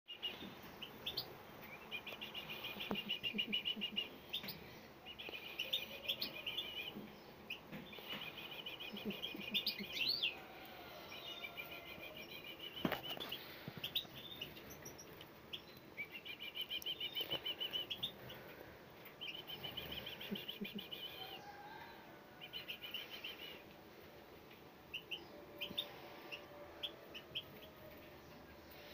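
A brood of songbird nestlings, a few days old, giving begging calls to be fed: bursts of rapid, high chirping about a second or two long, repeated many times, thinning to scattered single chirps near the end.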